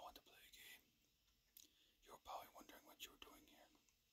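A man whispering softly and breathily close to the microphone, faint, with a few small clicks between the whispered phrases.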